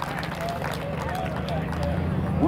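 Scattered voices of people talking at a distance, over a steady low rumble.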